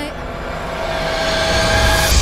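Instrumental backing music between sung lines of a live song: a held chord under a wash of sound that swells louder toward the next phrase.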